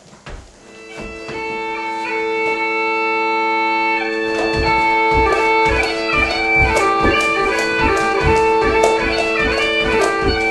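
Highland bagpipe dance music starting up: steady drones come in about a second in with the melody over them, and a regular beat of sharp strokes joins from about four seconds in.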